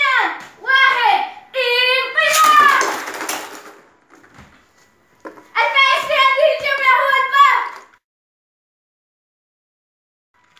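Loud children's voices shouting in two bursts, the first with a harsh noisy stretch in it; the sound then cuts off to silence about two seconds before the end.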